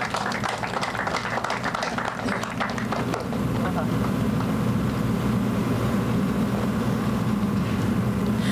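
An outdoor audience applauding, dying away after about three seconds, over a steady low rumble of background noise.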